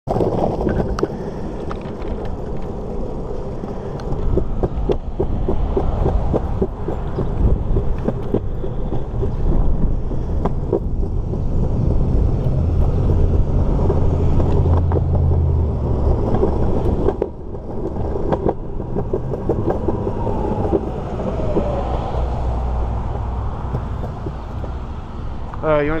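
Skateboard wheels rolling over a concrete sidewalk: a continuous rumble broken by frequent clicks as the wheels cross cracks and joints. The rumble deepens and grows louder for a few seconds in the middle.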